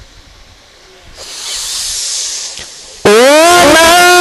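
A soft hissing noise for about a second and a half, then, about three seconds in, a male Quran reciter's voice comes in loud over a microphone and PA, gliding upward into a long held note.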